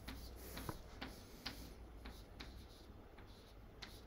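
Chalk tapping and scraping on a blackboard while writing: a quiet series of irregular, sharp taps, one with each stroke.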